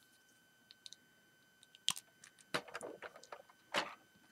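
LEGO plastic pieces clicking and rubbing as they are handled and pressed onto the model: a couple of faint clicks, a sharper click about two seconds in, then a cluster of small clicks and another sharp one near the end.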